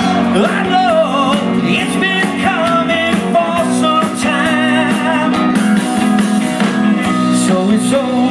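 Live rock and roll band playing, a wavering lead vocal line over guitar and bass.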